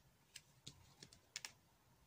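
Faint, sharp plastic clicks, about six in a second or so, from a small plastic squeeze bottle of alcohol-ink blending solution being squeezed and lifted off the paper.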